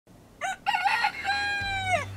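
A rooster crowing once, cock-a-doodle-doo: a short first note, a wavering middle, then a long held final note that drops off at the end.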